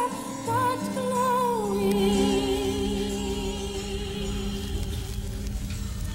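The end of a song: a singing voice with vibrato runs down through a short phrase, then holds one long note over a sustained accompaniment, fading towards the end.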